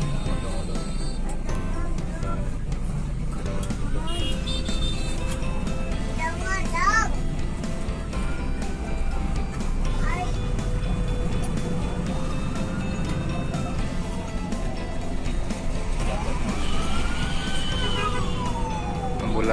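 Steady low rumble of a coach's engine and road noise heard from inside the front of the bus, with several slow rising-and-falling tones over it, the longest near the end.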